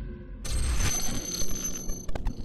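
Logo intro sound effect: a music sting with a low bass rumble, joined about half a second in by a bright, ringing high-pitched shimmer.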